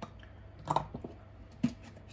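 A few faint clicks and knocks as a plastic tub of Aquarin fertilizer is picked up and handled, with one duller knock shortly before the end.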